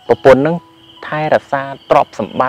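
A man talking in short phrases, with insects chirring underneath as one steady high-pitched tone.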